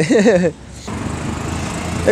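A man's voice briefly, then from about a second in a nearby motor vehicle's engine running steadily.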